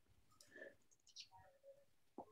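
Near silence: room tone with a few faint, short clicks about half a second to a second and a half in.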